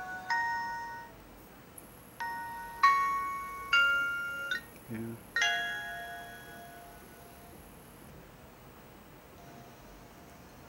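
Music through a mobile phone's small loudspeaker: a few struck, ringing notes that die away, with a soft knock about five seconds in. The music stops about six and a half seconds in, when the video playback is paused.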